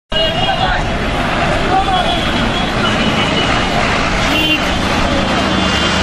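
Loud, busy street noise: traffic and a crowd of voices, with brief high steady tones now and then.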